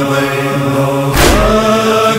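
A male voice chants a noha, a Shia lament, in a long held note over a low, steady vocal drone. A deep thump comes a little past a second in and the voice moves to a new note, part of a beat that recurs about once a second.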